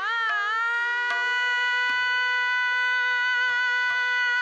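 A female Hindustani classical vocalist slides up into a long, steady held note and sustains it, over a tanpura drone. Sparse tabla strokes sound underneath, with low bass-drum thuds from about halfway in.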